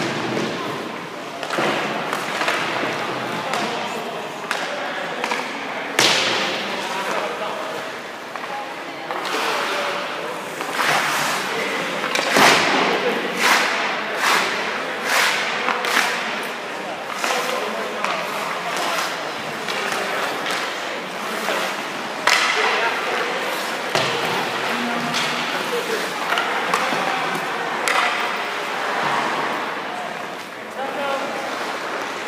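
Hockey practice on ice: repeated sharp cracks of sticks striking pucks and the ice, with skate blades scraping, echoing in the rink. The cracks come thickest in the middle stretch, with indistinct voices underneath.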